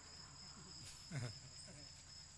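A quiet pause on a public-address system: a steady faint high-pitched whine over a low hum, with one brief faint voice-like sound about a second in.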